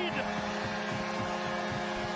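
Arena crowd noise after a home goal, with a steady low droning tone under it, typical of the arena's goal horn sounding.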